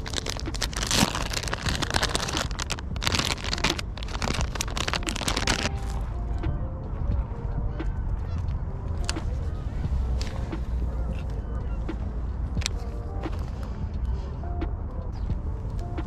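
Rustling handling noise for about the first six seconds, then a series of short honking calls from geese over a low wind rumble.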